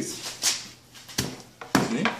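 A flat tool scraping and then slapping down twice on stiff sand-and-cement deck mud in a wheelbarrow, a short swish followed by two sharp knocks, as the mix is patted smooth to test its consistency.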